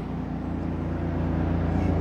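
A steady low rumbling hum, growing slowly louder through the pause.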